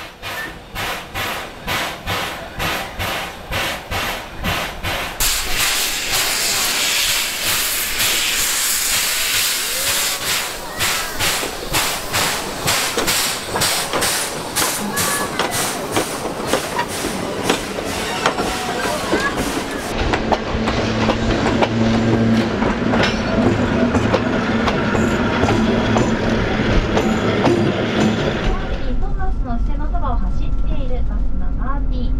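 Steam locomotive dressed as Thomas the Tank Engine chuffing, about three exhaust beats a second, with loud hissing steam through the middle. About two-thirds in it gives way to the steady low hum of a bus engine heard inside the cabin.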